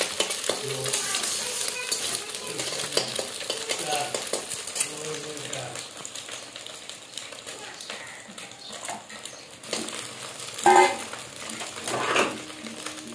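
A flat metal spatula stirring and scraping chopped onion and green chilli as they sizzle in oil in a metal kadai, with repeated scrapes and taps against the pan.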